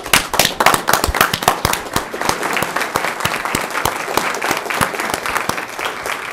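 Audience applauding, many hands clapping densely, loudest in the first couple of seconds and easing slightly after.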